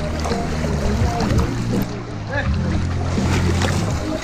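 Music with a steady, deep bass line, over the sloshing and lapping of pool water close to the microphone.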